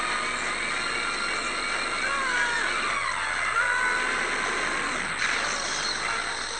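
A sci-fi time-travel sound effect: a steady rushing noise with wavering, gliding tones over it, swelling briefly near the end.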